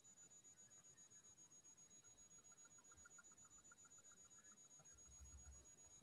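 Near silence: faint room tone over a video-call line, with a faint steady high whine and, in the middle, a very faint quick pulsing beep.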